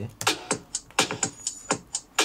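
Drum part isolated from a song by AI source separation, playing back over studio speakers: dry, short drum hits, about four a second, with no other instruments.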